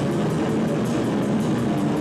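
Metal band playing live: distorted electric guitar over a drum kit, with cymbals struck in a steady run, the whole mix loud and dense without a break.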